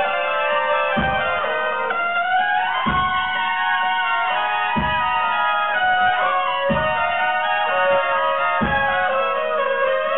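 A section of four trumpets playing a cascade without accompaniment: staggered entries stacking into overlapping held high notes, with rising slides into them. A low thump sounds about every two seconds.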